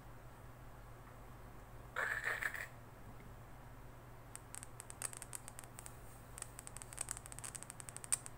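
Handling noise from a dynamic microphone's metal grille and body being handled and reassembled: a short scrape about two seconds in, then a quick run of light clicks through the second half. A low steady hum lies underneath.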